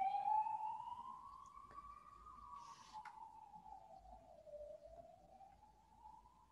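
Faint emergency-vehicle siren wailing, its pitch rising slowly, falling back, then rising again. A small click sounds about halfway through.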